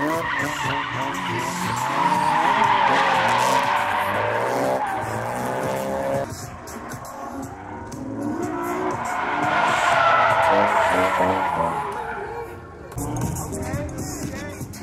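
Drift cars sliding on asphalt: long tire squeal over an engine revving up and dropping off, in two passes, the second fading away near the end.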